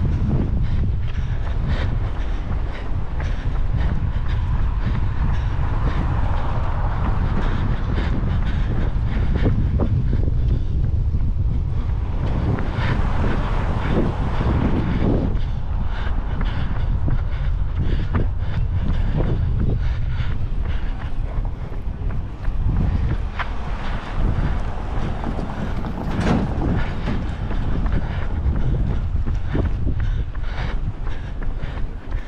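Wind buffeting the microphone of a camera carried on a run: a steady, loud low rumble with the runner's footfalls ticking through it.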